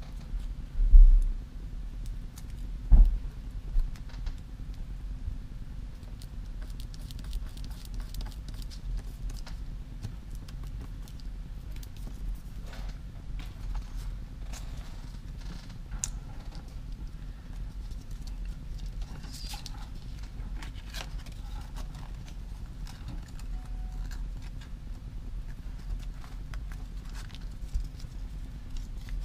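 Two dull thumps on the work table in the first few seconds, then faint scattered clicks and rustles of craft supplies being handled, over a steady low hum.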